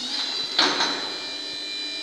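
Electric drive of a Yack wheeled stair climber running with a steady whine as it lifts its seated passenger up a step, with two sharp clunks about half a second in.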